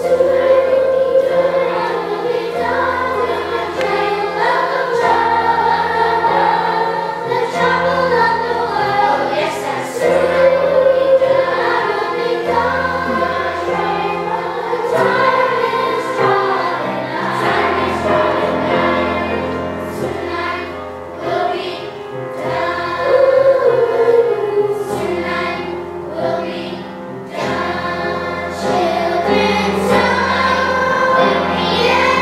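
Children's chorus singing a spiritual together, with a low accompaniment holding notes underneath that change every few seconds.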